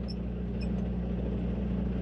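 Semi truck's diesel engine idling steadily, heard from inside the cab.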